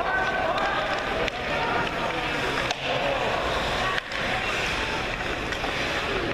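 Ice hockey rink sound: indistinct voices calling and chattering over the scraping of skates on the ice. Two sharp knocks come about three and four seconds in.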